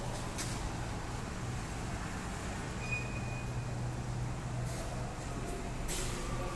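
Steady street ambience over a car park, picked up by a phone's microphone: a low hum of distant traffic, with a brief faint high beep about three seconds in.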